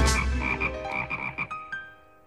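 Cartoon frogs croaking in a quick run of short repeated calls that fades away near the end, over the last of the film's orchestral music.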